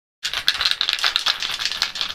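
Small plastic poster-colour bottles clicking and clattering against each other as they are gathered up in the hands: a rapid, irregular run of light clicks starting just after the beginning.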